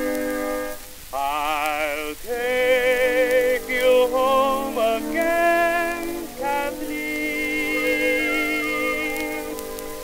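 Acoustic-era 78 rpm shellac recording from 1921: a small orchestra plays the last bars of the introduction, then about a second in a tenor voice starts singing with a wide vibrato over the orchestra. A steady hiss of record surface noise runs beneath, and the sound is thin and narrow-banded, typical of a pre-electric horn recording.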